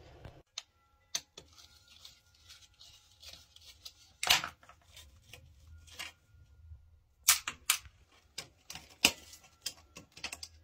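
Scattered sharp clicks and knocks of a hand tool working at a plastic toilet extension flange. The loudest knock comes about four seconds in, with a cluster of knocks in the last few seconds.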